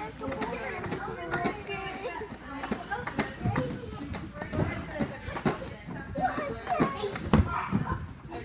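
Children chattering and calling out while playing, with scattered thuds of bodies landing on foam gymnastics mats, the loudest thud near the end.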